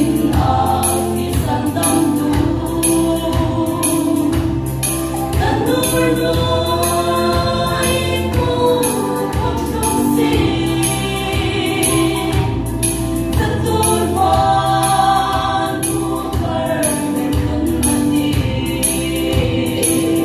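Female vocal group singing a Hmar gospel song in close harmony over instrumental backing with a bass line and a steady beat.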